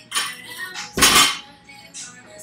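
A loaded barbell with Rogue bumper plates dropped from the front rack onto the gym floor: one heavy thud with the clank of the plates about a second in, after a lighter rattle of the bar just before.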